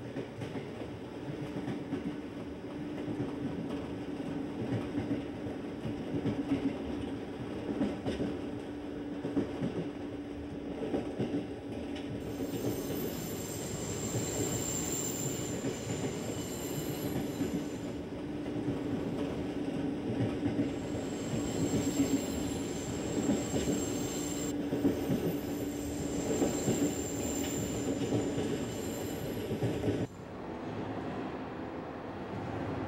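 Electric commuter train running along the track, heard from inside the car: steady rumble and irregular clatter of the wheels over rail joints under a steady hum. A high, thin wheel squeal joins in about twelve seconds in and comes and goes.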